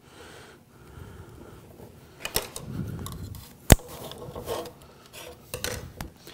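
VHB double-sided tape being pulled off its roll and pressed along an aluminium sheet: rubbing and scraping handling noises with a few sharp clicks, the loudest a little past halfway.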